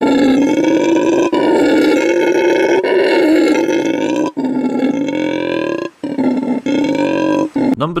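Howler monkey calling: deep guttural roars, one long roar of about four seconds, then shorter ones with brief breaks between them.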